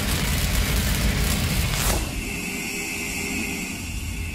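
Sound-design sting for an animated logo intro: the deep rumbling tail of a cinematic boom, a sharp whooshing hit about two seconds in, then a high ringing tone over a lower hum that fades away.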